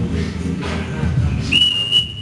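Background music with a steady beat; about one and a half seconds in, a long, steady high-pitched whistle tone starts, the signal calling time on the sparring round.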